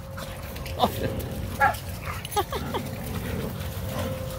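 Dogs at play giving a handful of short, high yips and whines, one about a second in and a quick cluster a little past the middle.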